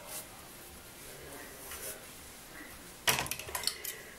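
Faint rustle of hair being parted with a comb, then near the end a short burst of sharp clicks and rattles, lasting under a second, as a hair clip is picked up and handled.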